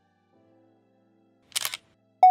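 A camera shutter click sound effect about one and a half seconds in, over faint background music with held notes.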